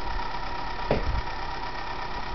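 Lutec magnet motor-generator running with a steady hum and faint steady high tones, with one brief knock about a second in.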